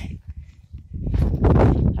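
Wind buffeting a phone's microphone: a low, loud blustering noise that swells about a second in and is strongest near the end.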